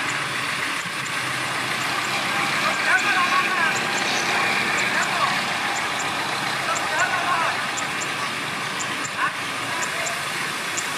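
Dump truck's diesel engine running steadily while its hydraulic tipper bed rises and begins tipping a load of soil, with a small bulldozer running nearby.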